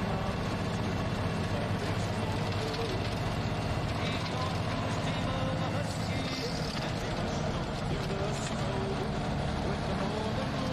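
Truck engine and road noise heard inside the cab while driving: a steady low drone with no change in speed.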